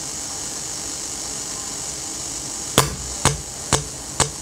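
Steady hiss from a powered amplifier and speaker on an echo-mixer test bench, picked up close to the speaker. About three quarters of the way in, a run of sharp, evenly spaced clicks begins, about two a second.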